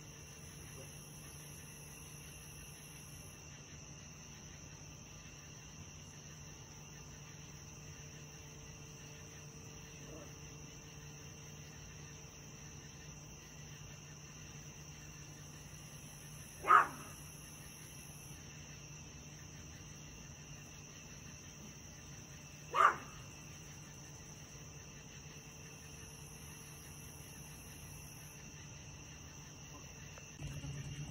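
A dog barks twice, single short barks about six seconds apart, over a steady low hum and a faint high insect chirring that comes and goes.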